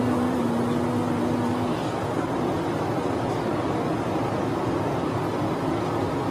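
Steady running noise of an airport moving walkway, an even rumble and hiss with no separate knocks or clicks.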